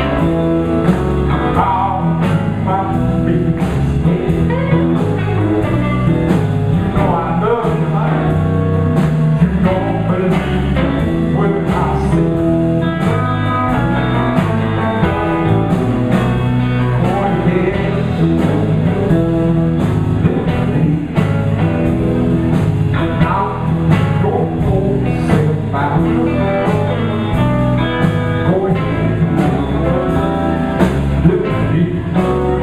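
Live blues band playing a boogie: electric guitars and electric bass over a steady drum beat.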